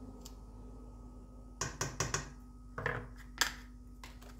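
A few sharp clicks and taps of kitchen things being handled, mostly in the second half, over a faint steady hum.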